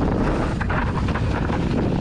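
Maxxis mountain-bike tyres rolling fast over a leaf-strewn dirt trail, a steady rumble dotted with small clicks and rattles from the bike, mixed with wind on the microphone.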